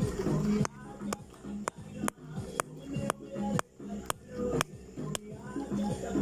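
A hand-held stone knocking a hermit crab's shell against a rock to crack it open for bait: about ten sharp knocks, roughly two a second.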